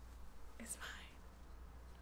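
Quiet room tone with one soft, breathy spoken word a little under a second in.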